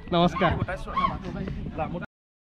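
A person's voice talking, its pitch rising and falling.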